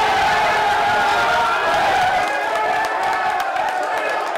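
A small group of men shouting and cheering together, loud and sustained, with scattered clapping joining in from about halfway through.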